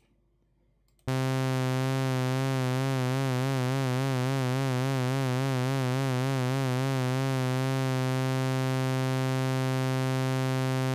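SynthMaster One software synthesizer holding a single low note with vibrato. The vibrato is a pitch wobble of a few cycles a second, its speed set by the mod wheel through the vibrato LFO. The note starts about a second in.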